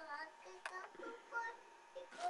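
A young child singing to itself in a high voice, with one short click about two-thirds of a second in.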